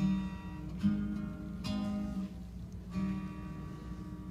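Acoustic guitar played as a song introduction: four strummed chords, each left to ring and fade before the next.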